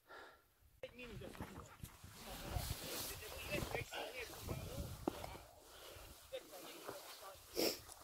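Heavy breathing of a hiker climbing steep rocky ground, with rustling and scraping as the camera rubs against clothing.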